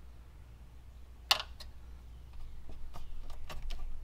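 Hex key turning a bolt down into the aluminum radiator shroud's rubber grommet: one sharp metallic click about a second in, then a string of small light clicks, over a low steady hum.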